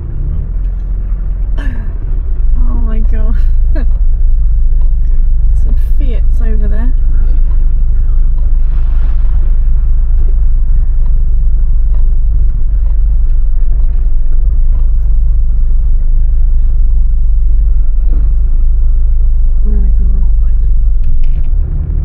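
Austin Allegro 1500's four-cylinder engine running at low speed, heard from inside the cabin as a steady low drone. A few brief voice sounds come over it in the first seconds.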